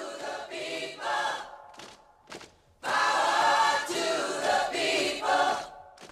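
A choir singing, several voices holding long notes together. The singing drops out briefly about two seconds in, then comes back fuller and louder.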